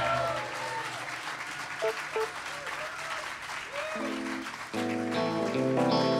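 Audience applauding with some shouts as the last chord of a song rings out. About four seconds in an electric guitar starts a riff, and the full rock band comes in with the next song shortly after.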